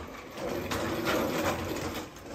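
Plastic wheels of a baby walker rolling over a hard floor as the baby pushes it forward, a steady mechanical rattle that grows louder about half a second in.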